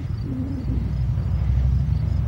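Wind buffeting the camera's microphone: a steady low rumble that grows louder about half a second in.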